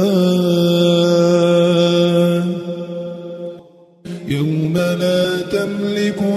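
Quranic recitation in melodic tajweed style: a single voice holds the long final vowel of «لله» on one steady note for about two and a half seconds, then fades out. After a brief breath pause about four seconds in, the chanting resumes.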